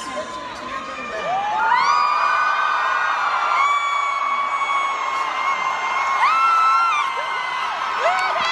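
Young women screaming and whooping in celebration: long, high-pitched shrieks that rise at their start and are held for a second or more, several in a row from about a second in, over the noise of a crowd.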